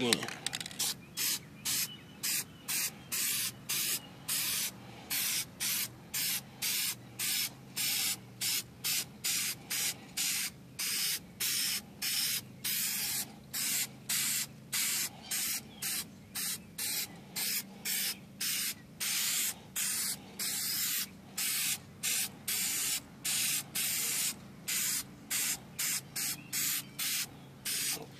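Aerosol can of general-purpose spray paint spraying in short hissing bursts, about two a second, putting another coat onto an alloy wheel rim.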